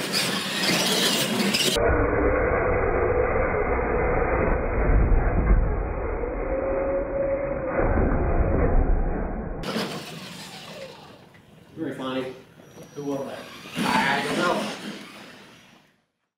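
Slowed-down, muffled replay audio of RC monster trucks racing on a hard floor: a low rumble with a gliding motor whine, then people's voices and laughter at normal speed.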